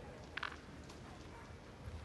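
Faint, steady background ambience of an indoor sports hall, with one brief sharp click about half a second in.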